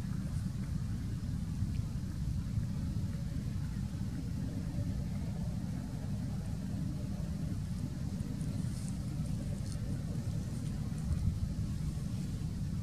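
Wind buffeting an outdoor microphone, a steady low rumble.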